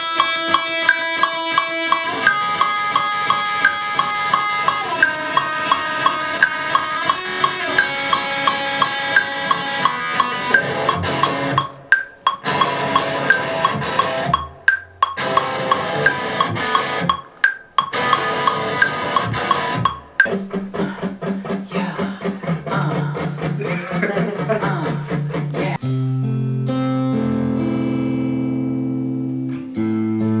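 Electric guitar played over a steady drum or click beat: a high, picked melodic part for the first twenty seconds, broken by a few short stops, then lower, heavier chords.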